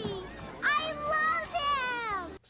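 A young girl's delighted, high-pitched squeal: a long cry starting about half a second in that slides down in pitch near the end.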